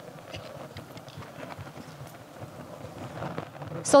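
Faint clicks and light knocks of hardware accelerator modules being handled and set down on a table, over low hall noise.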